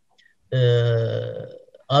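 A man's voice holding one long, steady vowel, a drawn-out hesitation sound like "ehhh". It starts about half a second in, lasts about a second and fades away, and is followed by speech near the end.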